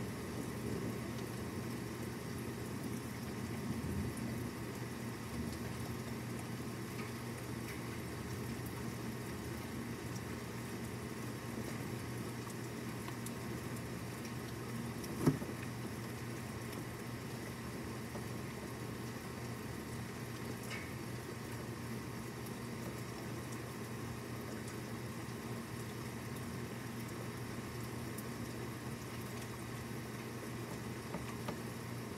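Steady rain and wind noise from a thunderstorm that has passed, with one sharp tap about halfway through.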